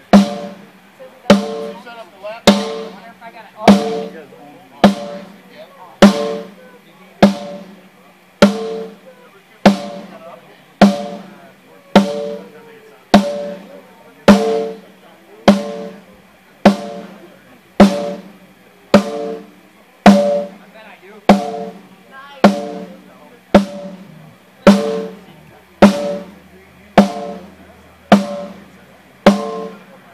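A single drum of a drum kit struck with a stick at a slow even pace, about once every second and a quarter, each hit ringing out with a steady pitch: a drum being checked one hit at a time during a soundcheck.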